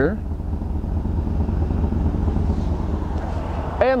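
Steady low rumble of the bus's 6.0-litre Vortec V8 gasoline engine idling.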